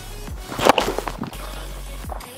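A short swishing rustle about half a second in, from a catcher's body mic and gear as he takes the pitch and pops up out of his crouch to throw, over background music with a steady low bass.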